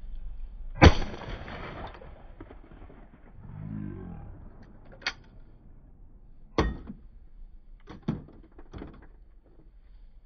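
A single shotgun shot about a second in, ringing out across the open range for about a second. Several sharper, quieter clicks and knocks follow in the later seconds, the loudest about two-thirds of the way through.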